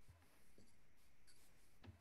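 Near silence: faint room tone with a few soft scratchy rustles and a faint tick near the end.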